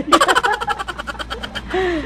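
A man laughing: a quick run of pulses that falls in pitch over about a second and a half, with a short vocal sound near the end.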